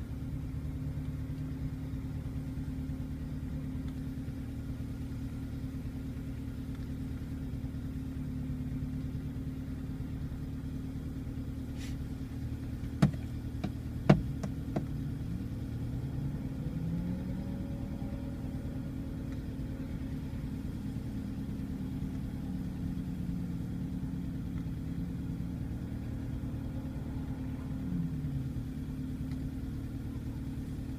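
Off-road SUV engine running at low revs, heard from inside the cabin, its pitch rising and falling a little in the second half. Two sharp knocks about halfway through.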